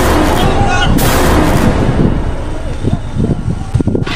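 Horror jump-scare sound effect: two sudden loud booming hits, the first right at the start and the second about a second later. People yell in fright, and quick thumps come near the end as they run off.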